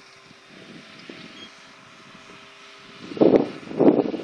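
Model airplane's motor and propeller flying high overhead: a faint, steady drone with thin held tones. Two loud short bursts break in near the end.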